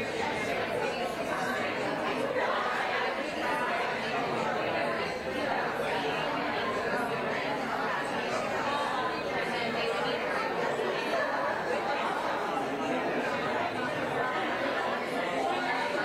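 Indistinct chatter of many people talking at once, a steady babble of voices with no single speaker standing out.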